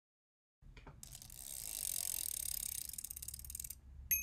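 Bicycle freewheel hub ratcheting: a fast run of clicking that builds up about a second in and stops abruptly shortly before the end.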